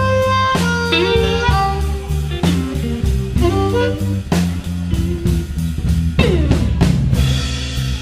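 Blues band playing an instrumental passage: a lead electric guitar with bent notes over bass and drums.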